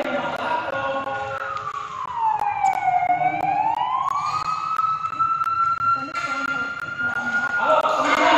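A siren wailing. Its pitch holds high, slides slowly down and back up over a few seconds, then holds high again until it breaks off near the end.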